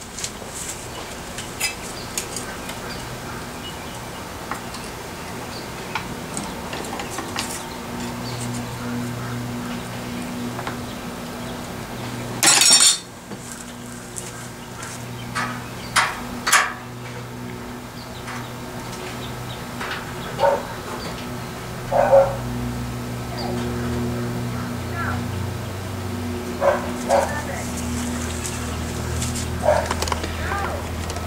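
Sheet-steel patch panel being cut and trimmed on a hand-lever throatless shear, with scattered short sharp cuts and metal clanks over a steady low hum.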